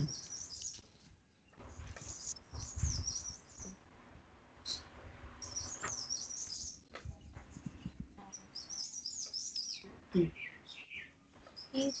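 A bird chirping and twittering in high, warbling bursts every few seconds, with faint scattered room noises between them.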